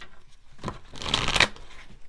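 A tarot deck being shuffled by hand: soft card rustles, then a dense half-second run of shuffling noise about a second in.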